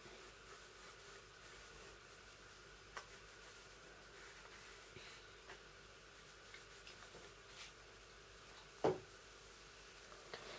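Faint pencil strokes scratching on paper, with a few light ticks and one sharper click about nine seconds in.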